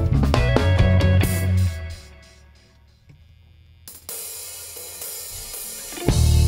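Live band with electric guitars, bass and drums playing, then breaking off less than two seconds in and ringing away to a near hush. About four seconds in, a cymbal wash comes in suddenly and grows slightly louder.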